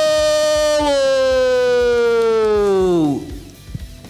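A ring announcer's long, drawn-out shout into a hand-held microphone, holding the last syllable of the winning boxer's name as one loud note that slowly falls in pitch and trails off about three seconds in.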